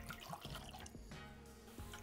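Vodka poured from a metal jigger into a steel cocktail shaker over ice, a faint trickle and splash, under soft background music.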